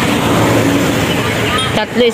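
Steady road traffic noise with people talking faintly in the background.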